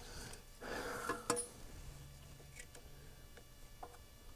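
Faint rustling and a few sharp clicks and taps of hand work on parts as a voltage regulator box is mounted under an ATV's fender. The loudest moment is a pair of clicks about a second in, with fainter ticks later.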